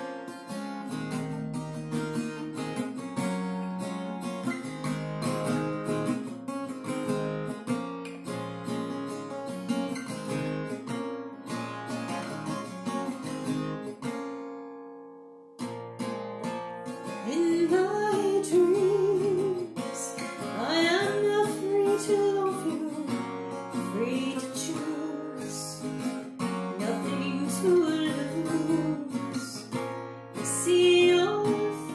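Acoustic guitar playing an intro on its own; about halfway through it fades away and cuts back in abruptly a second later. A woman then starts singing over the guitar.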